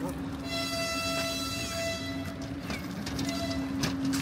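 A train horn sounds a steady note for about two seconds, then briefly again near the end, over the steady hum of standing trains. Footsteps and luggage trolley wheels click on the trackside ground.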